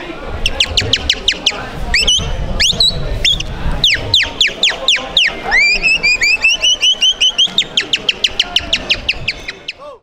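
A man whistling an imitation of siskins' song: a long run of quick, high, sweeping chirps, several a second, then about halfway a rising whistle into a string of short repeated chirps, fading out at the end.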